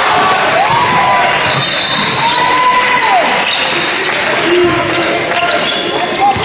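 A basketball being dribbled on a gym's hardwood floor during a game, with players' voices ringing in the large hall.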